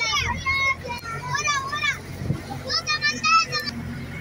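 Children's high-pitched voices calling out and chattering in several bursts, over a low steady hum.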